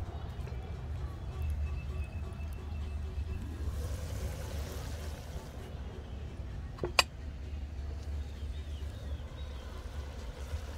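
Steady low wind rumble on the microphone, with one sharp metallic clank about seven seconds in as the lid of a charcoal kettle grill is lifted off.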